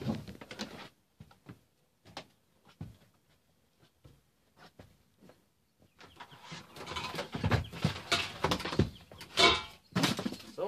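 Household items being handled and shifted about: a few scattered knocks and clicks, then about four seconds of busier scraping, rustling and knocking, loudest near the end.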